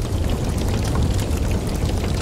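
Sound effect of a burning fire: dense crackling over a steady low rumble.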